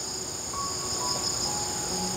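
Steady, high-pitched chorus of insects, several layered trilling tones holding constant throughout.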